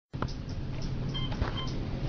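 Floor buttons in an Otis elevator car being pressed: a few short clicks and two brief high beeps, over a steady low hum in the car.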